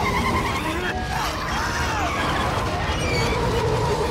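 Film soundtrack of a road chase: the engines of a heavy tanker truck and chasing cars running hard at speed, with tyre and road noise, a steady dense rumble throughout.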